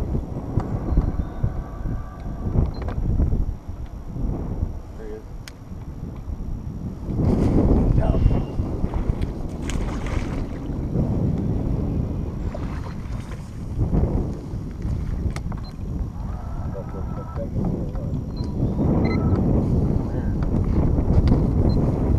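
Wind buffeting the camera microphone, a low uneven rumble that swells about seven seconds in. Faint voices come and go under it.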